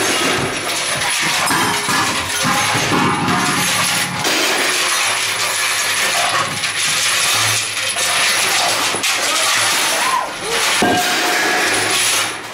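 Loud, continuous harsh noise with clattering and clinking metal, from a live noise performance worked on a small cement mixer drum.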